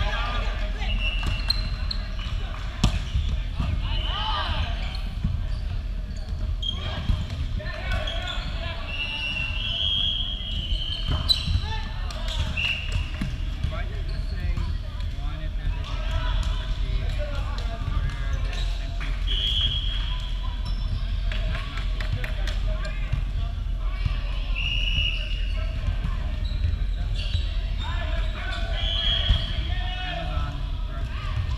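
Indoor volleyball play on a hardwood gym floor: sharp thumps of the ball being hit and landing, brief high squeaks of sneakers on the court, and players' voices calling out over the low hum of a large hall.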